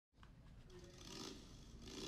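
Near silence: a faint hiss that swells slightly about a second in.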